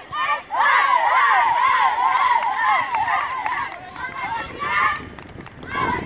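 A group of young children shouting together in high-pitched voices, loudest in the first half and then dying down.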